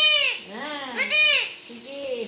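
Alexandrine parakeet giving two loud, harsh calls about a second apart, each rising then falling in pitch. Softer, lower voice sounds come between the calls.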